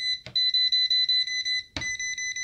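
Non-contact voltage pen beeping rapidly and high-pitched, signalling that AC voltage (120 V) is present at the points being tested. Two short clicks sound over the beeping.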